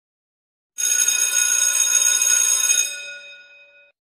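A bell ringing, starting sharply about a second in, holding steady for about two seconds, then fading away.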